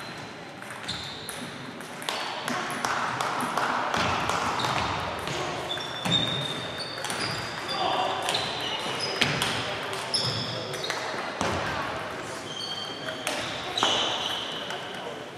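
Table tennis balls ticking off bats and tables from several matches in a large hall, an irregular run of sharp clicks, some followed by short high-pitched tones, over a murmur of voices.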